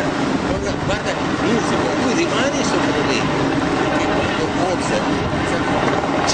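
Wind buffeting the microphone, a steady rushing noise, with indistinct talk half-buried under it.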